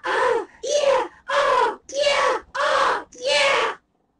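A person's voice crying out six times in a row, loud and evenly spaced. Each cry lasts about half a second and has the same rise and fall in pitch.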